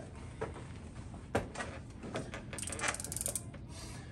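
Snap-off utility knife being handled: a few separate sharp clicks, then a quick run of ratcheting clicks lasting under a second, typical of the blade slider being pushed out.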